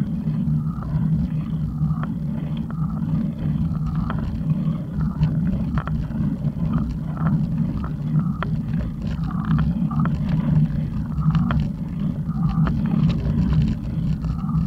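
Steady low rumble of wind and road noise on the microphone during a bicycle ride, with scattered light clicks.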